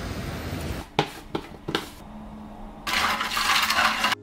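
Steady background noise, a few short knocks, then near the end about a second of water rushing into a tumbler.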